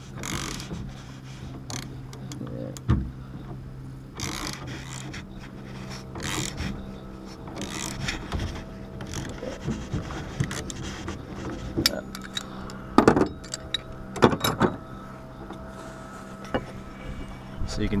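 Socket ratchet clicking as it turns the threaded rod of a three-jaw gear puller, with sharp knocks and creaks as the puller strains against a steering wheel seized on its helm shaft by corrosion. The loudest knocks come a few seconds before the end.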